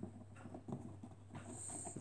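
Faint handling noise: a few soft, irregular taps and rubs as a large latex pig-head mask is turned over in the hands, over a low steady hum.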